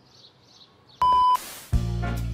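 Near quiet for about a second, then a short, steady, high beep, followed just before the end by music starting with a deep bass note.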